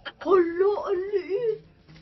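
A woman's drawn-out, wavering whimper-like voice, without words, lasting about a second and a half, its pitch going up and down: an excited whine.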